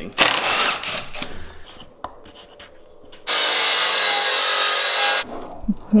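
Power tools working wooden boards: a short burst of tool noise in the first second, then a steady power-tool run of about two seconds that cuts off suddenly.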